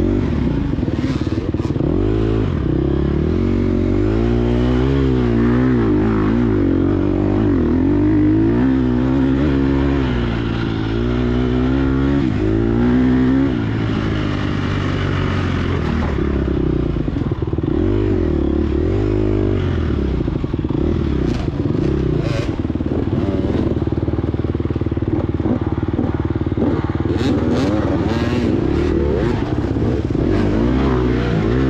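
A 2022 Gas Gas EX250F's single-cylinder four-stroke engine being ridden hard, its pitch rising and falling over and over as the throttle is worked, then holding steadier in the second half. A few sharp knocks come in the last third.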